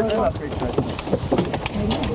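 A man's voice at the start and again near the end, with scattered knocks, clicks and rustling of gear between as soldiers climb into a helicopter cabin.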